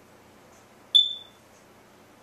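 A single short, high-pitched beep about a second in that rings off within half a second.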